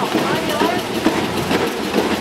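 A crowd of marchers talking over the steady noise of a city tram running on its rails.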